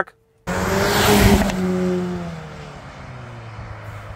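Cupra Ateca 2.0 TSI's turbocharged four-cylinder with an Akrapovič exhaust, heard from outside the car as it accelerates hard away, then lifts off. The engine note falls and fades as the car goes off on the overrun, the moment when the exhaust is meant to pop, though any pops are faint.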